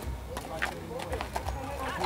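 Hooves of a paint horse walking on packed dirt: several clops, about three a second, with people talking in the background.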